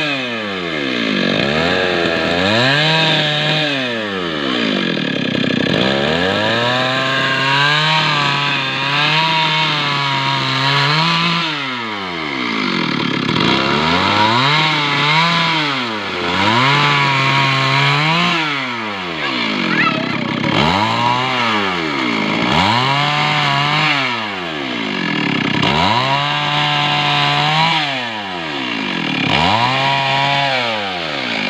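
Stihl two-stroke chainsaw ripping a log lengthwise into planks. The engine pitch repeatedly dips and climbs back, about every two seconds.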